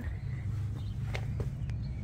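A few soft footsteps on pavement over a low steady rumble of outdoor background noise.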